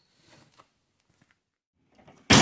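Near silence, with a faint brief rustle about a third of a second in.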